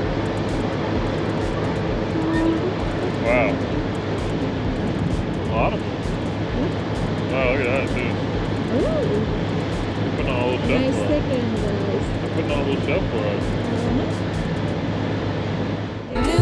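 Car ferry's engine running with a steady low drone under wind noise, with brief faint calls now and then.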